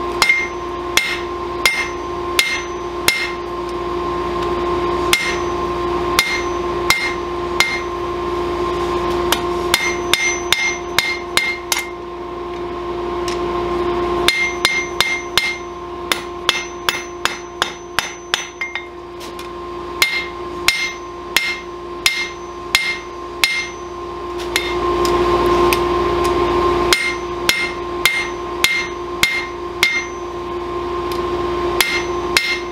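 Hand hammer striking red-hot steel on an anvil in runs of blows, about two to three a second, with short pauses between runs and a brief metallic ring on each blow. The hot steel is being drawn out into the tapered point of a blade.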